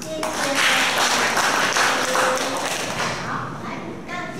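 Audience applauding: the clapping starts suddenly and dies away after about three seconds, with a few voices underneath.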